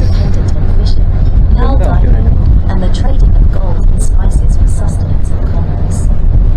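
A wooden creek boat's engine running with a steady low drone while under way, with voices talking faintly over it.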